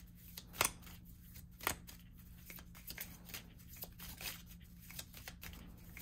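A deck of tarot cards being shuffled by hand, hand to hand: a steady run of soft, irregular card rustles and taps, with two louder snaps about half a second and a second and a half in.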